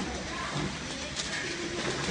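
Plastic cup counting and packing machine running: a steady low mechanical hum with a few light clicks.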